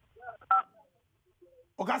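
A short telephone keypad tone, two notes sounded together, comes over the studio phone line about half a second in as a caller's call is put through. A man's voice starts near the end.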